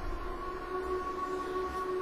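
Soft background music of a few sustained tones held steady.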